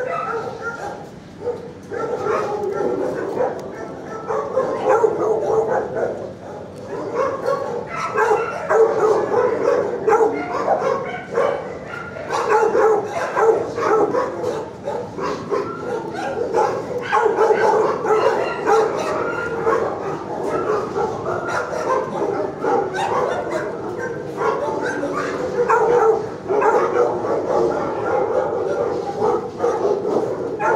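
Shelter dogs barking and yipping in their kennels, a loud, continuous din of overlapping barks with no pause.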